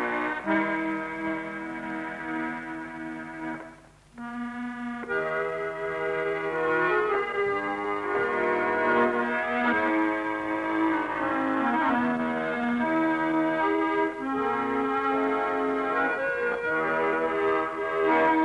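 Hohner accordion playing a Scottish folk tune in held, reedy notes with chords beneath, with a brief break about four seconds in before the tune carries on.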